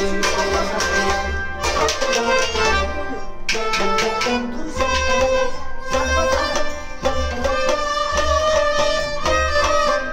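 Kashmiri folk music with a large clay pot drum (noot) struck at its mouth by hand, giving deep booms in a steady rhythm about once a second, under a sustained melody line.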